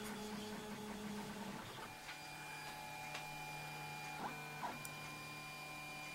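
Stepper motors of a MendelMax 3D printer driving the print head and bed mid-print, a faint steady whine whose pitch shifts about two seconds in as the moves change. A couple of brief ticks come a little past the middle.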